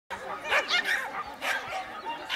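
A dog barking: about three short, sharp barks in quick succession.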